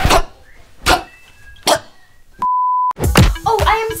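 A single steady electronic bleep, one pure tone about half a second long, a little past halfway through, with the other sound muted around it, as used to bleep out a word. Before it a few short knocks; a voice starts near the end.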